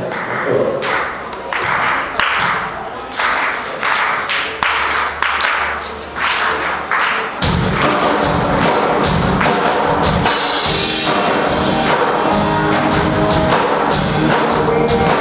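A steady beat of sharp hits, about one and a half a second, then about seven seconds in a live rock band comes in with electric guitars, bass and drums and plays on.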